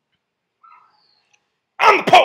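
Near silence, then a man's voice starts loudly near the end.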